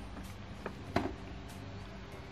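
Quiet steady low hum with two light clicks, about a third of a second apart, near the middle.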